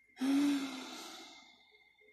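A woman's long sigh: a brief voiced start, then a breathy exhale that fades away over about a second and a half.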